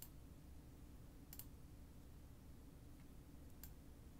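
Near silence: room tone with three faint, short computer mouse clicks.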